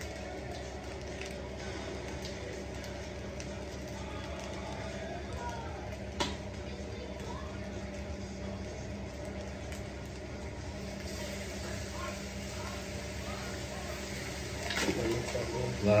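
Fried rice sizzling in a large hot pan as soy sauce is poured over it, a steady frying hiss over a constant low hum. A single sharp click sounds about six seconds in.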